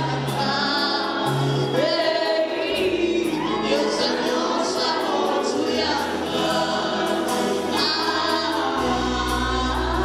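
Gospel worship song: a woman sings lead into a microphone, backed by other voices and sustained low bass notes that change pitch every few seconds.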